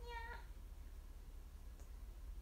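A single short, high-pitched meow-like call at the very start, lasting under half a second.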